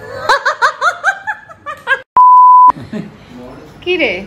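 A woman laughing in quick bursts for about two seconds, then a loud, steady single-pitch censor bleep lasting about half a second.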